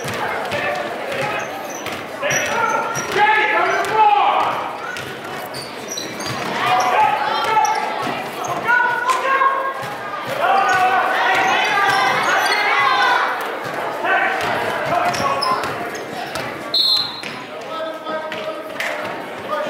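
A basketball game in a gym: a ball bouncing on the hardwood, short high sneaker squeaks, and players and spectators shouting in bursts, echoing around the hall.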